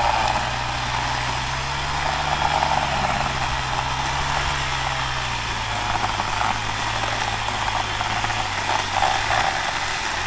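Small two-stroke engine of a power cutting tool running at a steady speed at a dead tree, its pitch rising slightly about two seconds in and falling back near the end.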